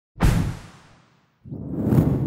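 Two whoosh transition sound effects: the first starts sharply just after the start and fades away over about a second; the second swells up from about one and a half seconds in and is loudest at the end.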